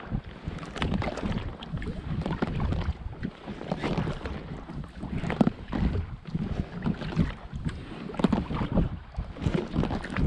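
Packraft being paddled with a double-bladed carbon-shaft kayak paddle: the blades dip and pull through calm lake water stroke after stroke, splashing and dripping, with wind rumbling on the microphone.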